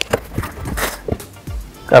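Cardboard shipping box being opened: a blade slitting the packing tape and the flaps pulled apart, with scattered clicks and short scraping rustles, over background music.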